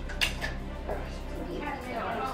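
A single sharp click about a quarter of a second in, followed by a fainter one, then faint murmured voices.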